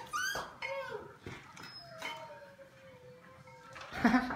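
Golden retriever puppies whining: two short whines that rise and fall in pitch, then one long, thin whine sliding slowly down in pitch.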